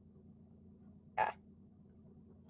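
Faint steady hum of a video-call audio line, with one short, croaky vocal sound from a participant about a second in.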